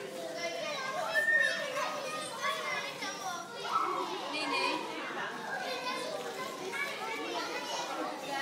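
Many young children's voices chattering and calling out over one another.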